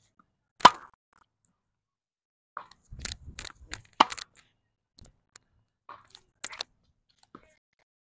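Tennis ball being hit back and forth on a hard court: sharp pops of racket strings on the ball, the loudest about half a second in and again at about four seconds, with softer pops of bounces and distant strikes between them.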